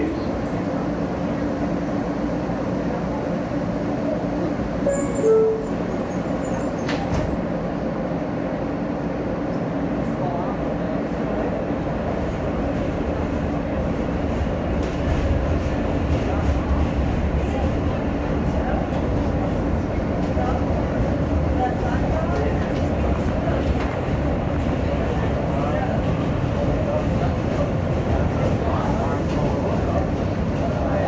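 New York City subway train heard from inside the car as it pulls out of an elevated station: a steady hum at first, then motor and wheel rumble growing louder as the train picks up speed about halfway through.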